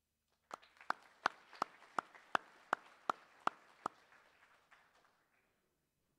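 Audience applause, with one nearby pair of hands clapping sharply about three times a second. The applause fades out about five seconds in.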